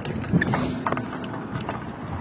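Kick scooter wheels rolling on asphalt: a steady rough rumble with a few light clicks and knocks.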